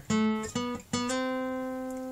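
Acoustic guitar playing single notes on the G string: three picked notes, each a little higher, the last one starting about a second in and left ringing as it slowly fades.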